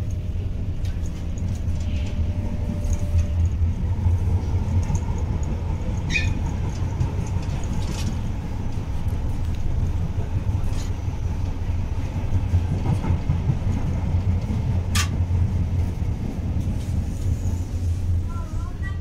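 Tyne and Wear Metrocar running along the line, heard from inside the car: a steady low rumble of motors and wheels on rail, with a few sharp clicks, the loudest about fifteen seconds in.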